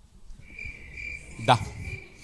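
Crickets chirping, a steady high trill, used as the classic comic sound effect for an awkward silence when a joke gets no laugh.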